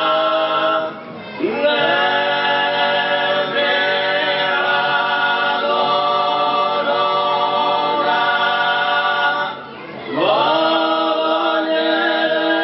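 Sardinian cuncordu: four male voices singing sacred polyphony a cappella, holding long close chords. The chords break briefly about a second in and again near the end, and each new phrase starts with the voices sliding up into the chord.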